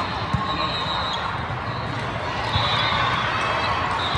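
Volleyball hall ambience: balls being struck and bouncing on the courts as short knocks, with one sharper hit just after the start, over a steady wash of crowd chatter in a large, echoing hall.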